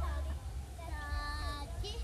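A child's voice singing out one long held note about halfway through, among brief bits of children's and adults' voices.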